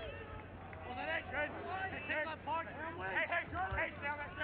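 Speech: voices talking, over a steady low background rumble.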